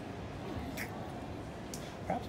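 Steady outdoor city background hum with faint distant voices, and two brief high-pitched sounds about a second apart.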